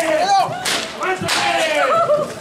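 A cord whip lashing, with two sharp cracks about a second and a half apart, mixed with voices calling out.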